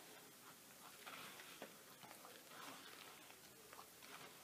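Faint, irregular squelching and small clicks of a rubber-gloved hand squeezing wet Ultracal 30 gypsum plaster slurry in a plastic bowl, working the lumps out by hand.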